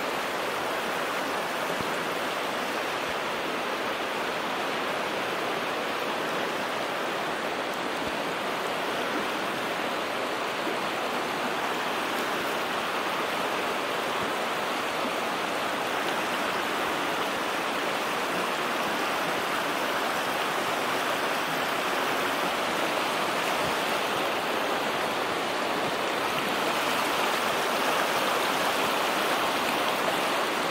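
Underground river in a limestone cave, water flowing steadily over a stony bed with a continuous rush that grows a little louder near the end.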